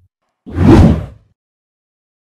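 A single loud whoosh transition sound effect, rising in about half a second in and fading out within a second.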